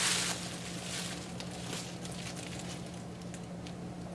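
Faint rustling of a synthetic wig's fibres as it is handled, with a louder rustle right at the start and small scattered ticks after. A steady low hum runs underneath.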